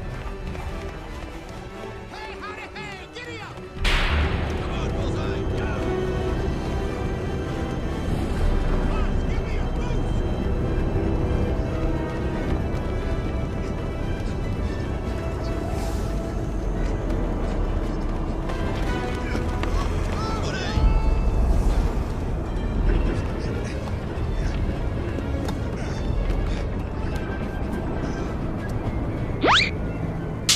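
Film soundtrack: dense score music mixed with sound effects, jumping abruptly louder about four seconds in and running on busily, with a quick rising sweep near the end.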